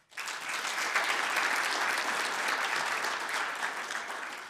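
Audience applauding, starting suddenly and holding steady, then thinning out near the end.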